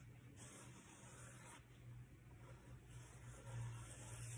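Near silence: faint room tone, with a slight soft swell about three and a half seconds in.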